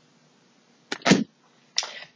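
Two sharp taps about a second in, then a brief rustle near the end: a deck of tarot cards being handled and tapped on the table.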